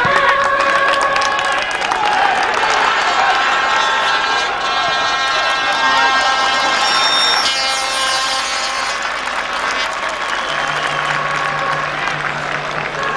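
Football crowd on the terraces cheering and chanting, with long held notes running through the noise.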